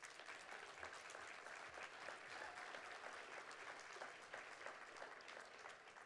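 Audience applauding, a steady patter of many hand claps that thins out near the end.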